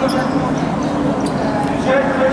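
Futsal ball being kicked and bouncing on a hard sports-hall floor, with players' voices calling out over the play.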